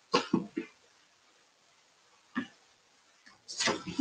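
A person coughing: a quick run of short coughs at the start and one more about two seconds in.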